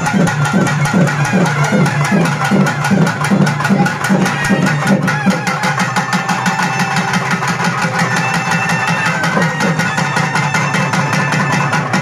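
Traditional temple melam: drums beaten in a fast, driving rhythm with a reed pipe playing sustained notes over them. The drumming eases about halfway through while the pipe carries on.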